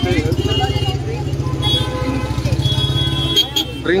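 A vehicle engine idling close by, a steady rapid low pulsing that breaks off about three seconds in, with the voices of a street crowd over it.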